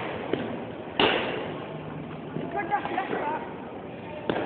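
A single sharp knock of a cricket ball about a second in, with a short echo after it.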